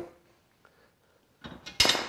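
Small metal hardware and stand parts clinking while being handled. It is near silent for over a second, then a few light knocks and one sharp metallic clink with a short ring near the end.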